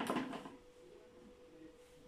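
Quiet room tone with a faint steady hum, with no distinct handling sound.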